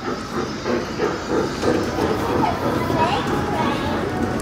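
Trackless mall kiddie train ride rolling past close by, its speaker playing recorded steam-locomotive chugging and hiss, with faint voices in the background.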